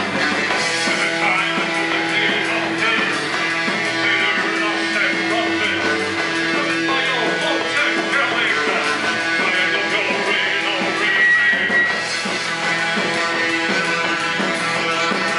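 Live gothic rock band playing: drums and electric guitar in a loud, continuous full-band mix.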